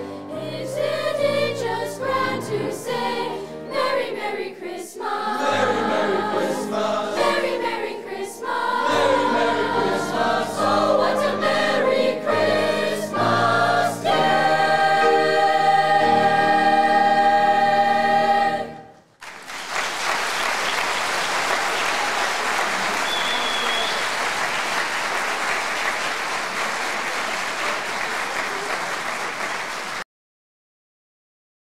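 Youth choir singing in harmony, ending the song on a long held final chord that cuts off about 19 seconds in. Audience applause follows and carries on to the end.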